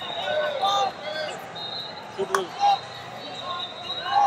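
Coaches and spectators shouting in a large arena around a wrestling match, with one sharp smack a little over two seconds in.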